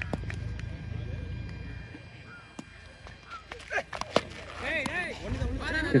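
Cricket bat striking the ball with a sharp crack about four seconds in, followed by distant shouting from the players as the shot goes for four.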